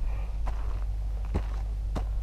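A hiker's slow footsteps and trekking-pole strikes on a gritty dirt and gravel mountain path, about three distinct steps, over a steady low rumble.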